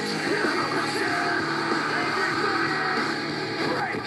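Background rock music playing at a steady level.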